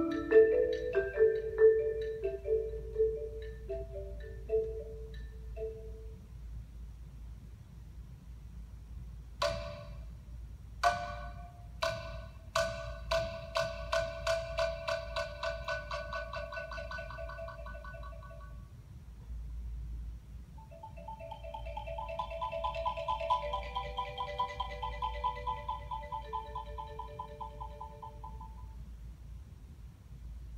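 Solo marimba playing. A run of mallet notes dies away, a lull follows, then a few sharp accented strikes lead into fast repeated-note rolls. After a short pause, a softer sustained roll of chords fades near the end.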